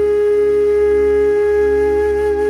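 Music: a flute-like wind instrument holding one long steady note over a low drone.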